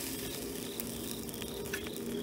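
Quiet night-time background: insects chirping in an even, repeating pattern over a low steady drone, with a few faint clicks of metal tongs on the grill.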